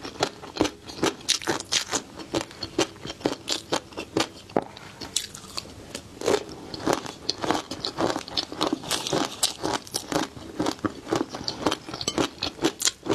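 Close-miked chewing of spicy flying fish roe (tobiko). The small eggs crunch and crackle in a continuous run of sharp clicks, several a second.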